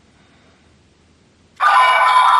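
A quiet pause, then about a second and a half in, the Black Sparklence toy's small speaker abruptly starts a loud electronic sound effect and music.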